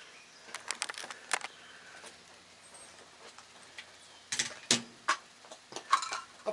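Scattered light clicks and clacks of handling at the shooting bench, with one group of them about half a second to a second and a half in and another about four and a half to five seconds in.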